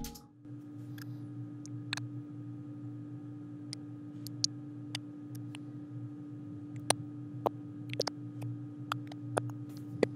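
Mouth clicks and tongue snaps removed from a voice recording, heard on their own through iZotope RX De-click's output-clicks-only monitoring: sparse, irregular little clicks over a faint steady hum.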